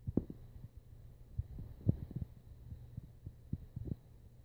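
Irregular soft low thuds of someone walking while holding a phone: footsteps and handling bumps, over a steady low hum.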